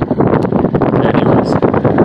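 Wind blowing across the microphone: a loud, steady rush broken by many short crackling gusts.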